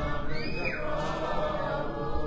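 A congregation singing a devotional chant together, many voices blended into one steady sound.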